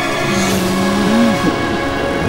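A man's frightened, sobbing moan: one held low note that wavers up and breaks off about halfway through, over a sustained eerie music drone.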